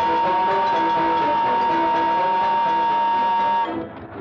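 A factory steam whistle blowing one long steady blast, with orchestral music under it; the blast cuts off shortly before the end.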